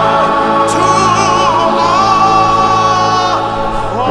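A choir with a chamber orchestra performing a slow sacred song. The voices hold a long sustained chord from about a second in, which gives way to new, vibrato-laden sung notes near the end.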